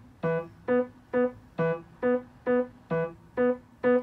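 Piano playing the left-hand accompaniment of the opening four bars of a beginner's piece: single notes on an even beat of about two a second, a low note followed by two higher ones, repeating.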